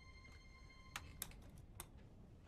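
Near silence with a few faint clicks from handling the controls and turntable of a radio studio desk, over a faint steady high tone that stops about halfway.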